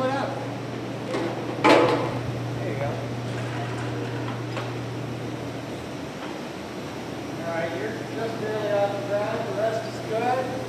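Forklift running with a steady low hum that dies away about six seconds in. A loud sharp knock comes about two seconds in, and indistinct voices are heard near the end.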